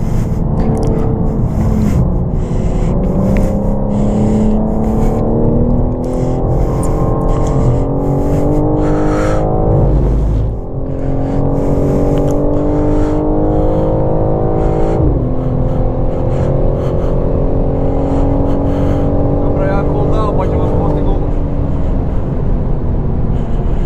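BMW M4's twin-turbo straight-six engine heard from inside the cabin under hard acceleration on a race track: the revs climb steadily, drop sharply at an upshift about ten seconds in, climb again, and drop at a second upshift about fifteen seconds in before holding fairly steady. A brief low thud comes just before the first shift.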